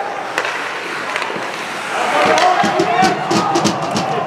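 Ice hockey play on the rink: sharp clacks of sticks and puck, a couple early on and then a quick run of them from about two seconds in, with voices shouting across the rink at the same time.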